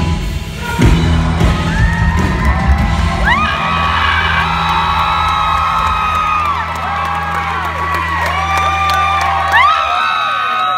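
A live band's final chord ends with a hit about a second in and a held low bass note that stops just before the end. Over it, an audience cheers with many high-pitched whoops rising and falling.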